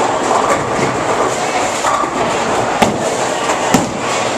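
Busy bowling alley: a steady rumble of bowling balls rolling down many lanes, with sharp clatters of pins being struck, the two loudest near the end.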